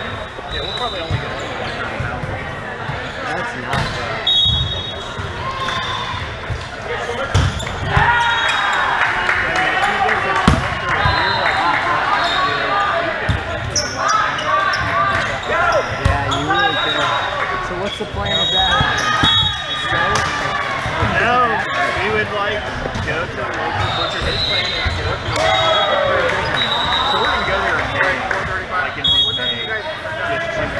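Indoor volleyball play in a large, echoing gym: the ball being struck in passes and hits, sneakers squeaking on the sport-court floor in short clusters, and players' voices.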